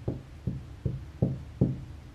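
Handling of a tarot card deck: a run of six soft, evenly spaced thumps, about two and a half a second.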